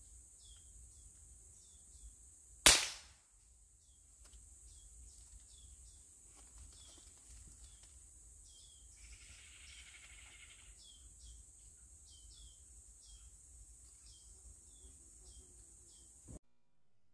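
A single shot from a scoped air rifle fired at a squirrel: one sharp crack about three seconds in that dies away quickly. Around it, a steady high insect drone and many short repeated chirps.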